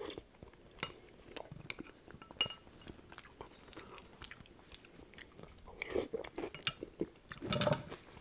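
Close-miked chewing and mouth sounds of a man eating soft, stew-like food by the spoonful, with small clicks of a metal spoon against a glass bowl. There are a few louder smacks near the end.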